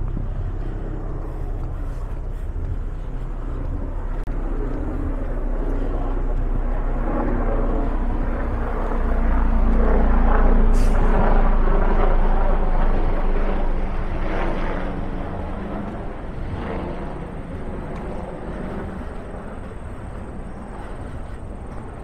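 City street traffic, with a motor vehicle passing close by: its engine rumble grows louder to a peak about halfway through and then fades away.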